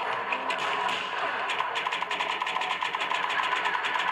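Television show audio playing in a small room: a fast mechanical rattle of about ten clicks a second sets in about a second and a half in, over background music.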